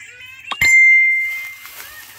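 A single bell-like ding about half a second in: one clear ringing tone that fades away over about a second.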